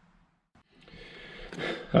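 A moment of silence, then a faint hiss of room noise that swells into a person's breath drawn in.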